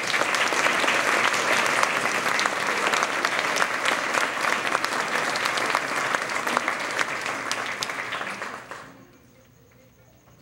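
Audience applauding steadily, then dying away about nine seconds in.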